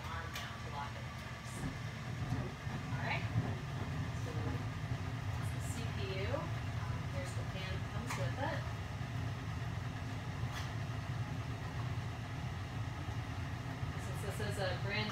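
Light clicks and rustles of a small cardboard box, a stock CPU cooler's packaging, being handled and opened, over a steady low hum.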